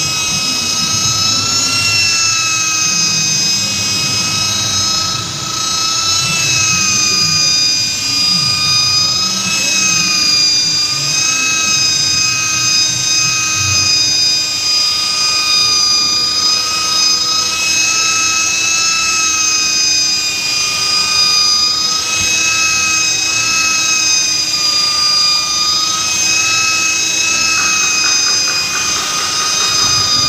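Electric rotary polisher running steadily with a high whine as its pad works wet polishing compound over wiper-scratched windshield glass; the pitch wavers slightly as the load on the pad changes.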